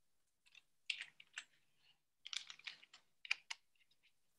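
Faint computer keyboard typing in a few short bursts of key clicks.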